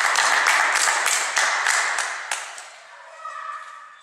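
A small group applauding, the clapping dying away about two and a half seconds in.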